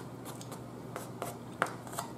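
Close-up eating sounds: a person chewing turkey neck, with about five short wet clicks and smacks of the mouth. The strongest comes about one and a half seconds in.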